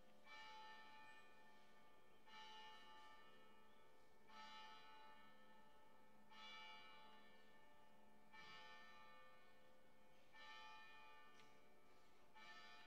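A church bell tolling faintly, one stroke about every two seconds, six strokes in all, each ringing on and dying away before the next.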